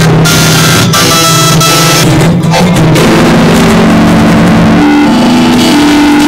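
Loud music from a song, dense and continuous.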